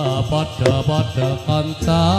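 Javanese gamelan music accompanying tayub dancing: a wavering, ornamented vocal line over the ensemble, with a few sharp percussive strikes.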